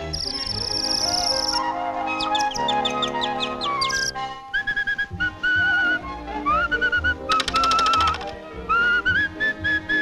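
Orchestral cartoon score. From about halfway there is a whistled tune over it, its notes slightly wavering and sliding up into each pitch.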